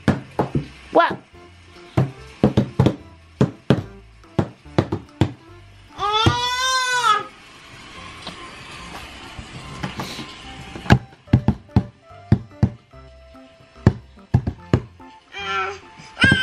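A baby slapping her palms on the lid of a toy chest in an irregular patter of sharp smacks. About six seconds in she lets out a one-second high squeal that rises and falls. The slapping starts again after a pause, and another squeal begins near the end.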